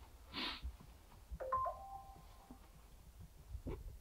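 A faint two-note electronic chime about a second and a half in: a higher note, then a lower one, ringing on together for under a second. A brief soft rush of noise comes just before it.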